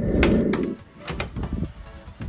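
Handling noise as a camera is picked up and carried: a dull rumble with a few clicks and knocks in the first second, then quieter rubbing and taps.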